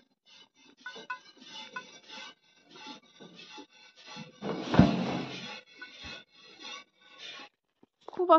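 Hand-milking a cow: streams of milk squirting into a bucket that already holds milk, in quick strokes about three a second. A louder thump comes about halfway through.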